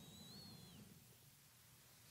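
Near silence: faint room tone, with a faint high wavering whistle lasting under a second near the start.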